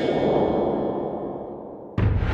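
A metallic clang sound effect ringing out and slowly dying away, the on-screen stinger for a traffic infraction card.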